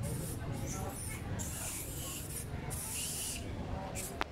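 Outdoor ambience: a steady low rumble with three stretches of high hissing, each under about a second long, and faint distant voices.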